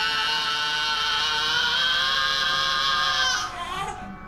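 A baby crying: one long, loud wail held on a steady pitch that sags slightly and breaks off about three and a half seconds in.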